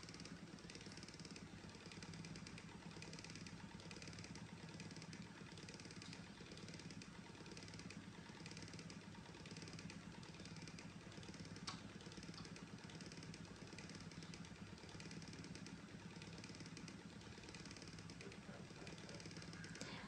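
Near silence: faint, steady low hum of room tone, with a single faint click about twelve seconds in.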